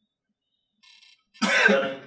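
A man coughs once, a loud burst lasting about half a second, starting about a second and a half in after a near-silent pause.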